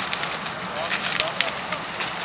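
Large open fire burning through brush, trees and a wooden house: a steady rushing noise with crackling and several sharp pops, the loudest about halfway through.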